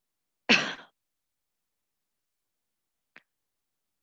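A person's short, breathy sigh close to the microphone, about half a second in, followed by a faint click near the end.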